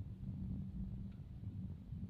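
Low, steady background hum and rumble with no distinct events.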